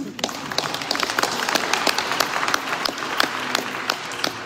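Audience applauding: many hands clapping together at a steady level.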